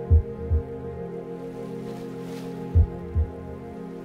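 Meditation music of sustained singing-bowl tones ringing steadily, with a low double thump twice, the pairs about two and a half seconds apart.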